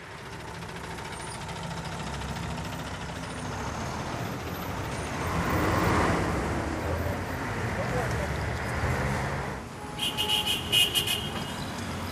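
City street traffic: cars and buses running in slow, dense traffic, a steady rumble that swells about halfway through. Near the end it gives way to a lighter sound with a few sharp clicks.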